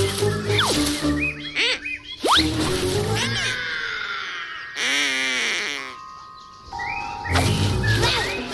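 Playful cartoon background music with comic sound effects: quick whistle-like pitch slides in the first few seconds and a wobbling, wavering sound about five seconds in.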